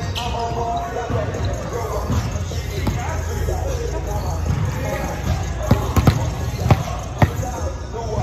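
A volleyball bouncing on a hardwood gym floor: four sharp thuds about half a second apart in the second half, over players' chatter.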